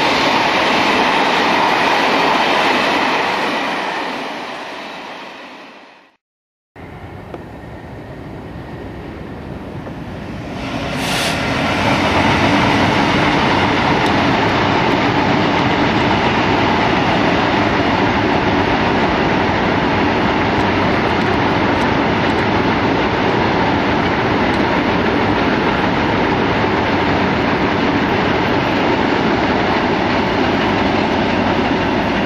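Freight wagons rolling past on the rails: a long train of tank wagons runs by and fades away, then a diesel-hauled train of loaded hopper wagons approaches, with a short high hiss about eleven seconds in, and passes with steady wheel and rail noise.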